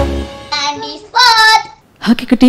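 A cheerful jingle's music ends just after the start, then a child's high voice sings two short phrases, the second holding one note.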